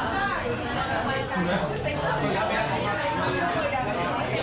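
Crowded restaurant chatter: many diners talking at once, a steady, noisy hubbub of overlapping voices.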